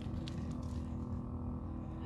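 Steady low outdoor background rumble with a faint steady hum and no distinct events.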